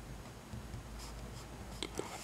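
Pen writing on paper: faint scratching of the pen tip across the sheet as a word is written, with a short click near the end.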